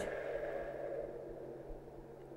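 Electric starter motor, run from a PWM speed controller, humming steadily while its shaft is braked by hand, loading it up to about 34 amps; the hum slowly grows quieter.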